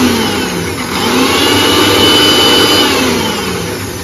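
Electric mixer grinder with a steel jar running, its motor whine gliding in pitch as it grinds and then winding down near the end.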